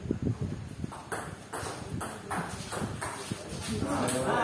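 Table tennis rally: a celluloid ball clacking off paddles and bouncing on the table in quick, irregular succession.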